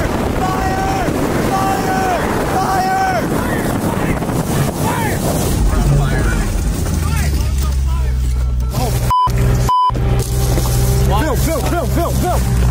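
People shouting over a twin-turbo V8 Ferrari driving across a stubble field, then a steady low engine drone heard from inside the cabin while the car is on fire. Two short censor bleeps cut in near the ninth and tenth seconds.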